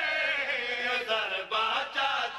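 Men's voices chanting a Saraiki devotional qaseeda, a lead reciter with others joining in. They hold long notes that slide down in pitch, with short breaks for breath.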